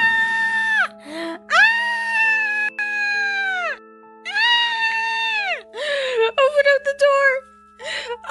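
A girl's voice lets out three long, high screams, each held steady for a second and a half to two seconds with a rise at the start and a fall at the end, followed near the end by shorter wavering cries. Background music with held notes runs underneath.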